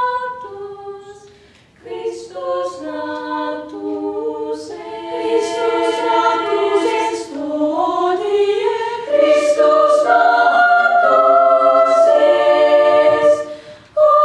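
Girls' choir singing a cappella. A phrase dies away about two seconds in, then the next builds and grows loudest from about nine seconds, with a short drop near the end.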